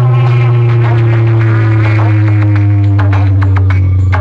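Loud music played through a tall stack of horn loudspeakers on a DJ sound-system cart, with a heavy bass note that slides slowly downward under a melody.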